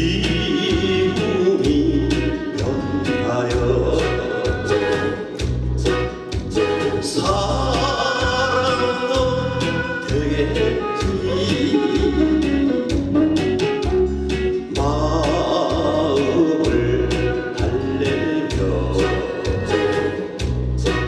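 A man singing a Korean trot song into a microphone over amplified accompaniment with a steady bass-drum beat of about two beats a second.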